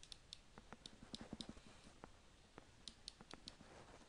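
Faint, irregular clicks and taps of a stylus writing by hand on a tablet screen, a few clustered strokes at a time.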